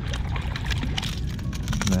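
A small hooked fish splashing at the water surface as it is reeled up to the kayak and lifted out, heard as a run of quick, sharp splashes over a low rumble.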